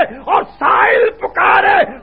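A man's voice in a drawn-out, chant-like delivery, in several short phrases, recorded on an old tape with a dull, muffled top end.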